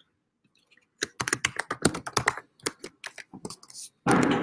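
Typing on a computer keyboard: a quick, irregular run of key clicks that starts about a second in.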